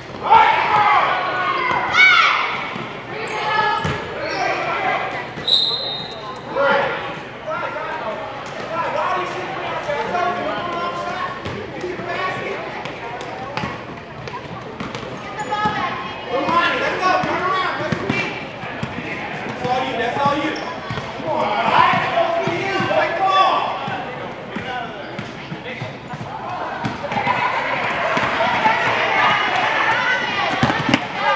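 Basketball dribbled and bouncing on a hardwood gym floor during play, mixed with the shouts and chatter of players and spectators, all echoing in a large gym. A brief high squeak comes about five seconds in.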